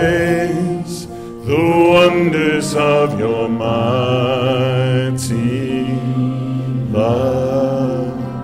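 A man singing a slow worship song with vibrato, holding long notes over guitar and band backing; a new sung phrase begins near the end.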